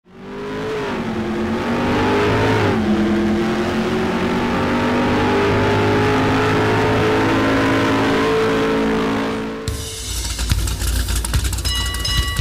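A car engine accelerating hard, its pitch climbing, falling once about three seconds in as it shifts up a gear, then climbing steadily again. It cuts off suddenly near the end, and music with a steady beat starts.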